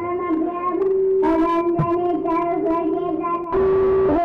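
A single voice singing a Carnatic raga in long held notes with small wavering ornaments and slides, in the manner of an alapana. Near the end the sound turns louder and brighter as a plucked string instrument comes in.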